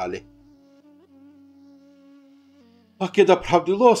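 Faint ney flute background music holding one long, soft note that steps down to a lower note near the end. A man's speech stops just after the start and resumes about three seconds in.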